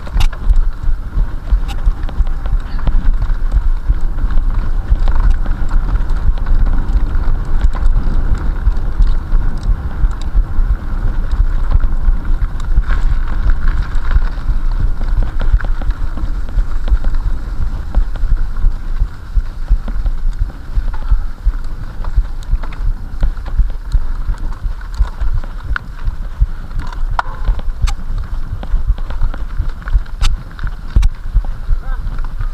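Mountain bike ridden fast over a rough forest dirt trail, picked up by an action camera on the rider: a constant heavy rumble of wind on the microphone mixed with the bumping and rattling of the bike over the ground, with scattered sharp clicks.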